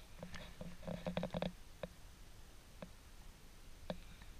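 Quiet handling of a smartphone against a solar power bank's wireless charging pad: a few faint clicks and taps of the casings, with a low muffled rubbing sound in the first second and a half.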